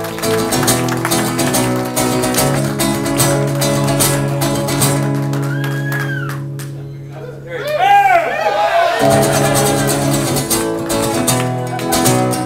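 Acoustic guitar being strummed, its chords ringing. About halfway through the strumming thins out, and a few rising-and-falling whoops from the audience come in.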